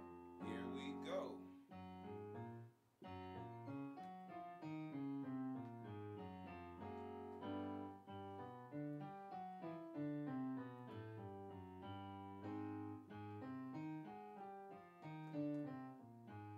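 Piano sound from a Yamaha Motif XS8 keyboard workstation, played as a flowing run of chords and melody notes, with a short break about three seconds in.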